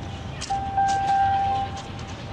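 Low, steady rumble of city street ambience from a film soundtrack, with a single held tone starting about half a second in and lasting about a second.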